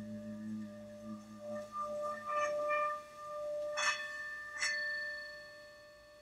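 Tibetan singing bowls ringing: a steady sustained tone, a lower hum that fades out about two seconds in, and two sharp strikes about four seconds in, half a second apart, each leaving high ringing notes. The sound dies away toward the end.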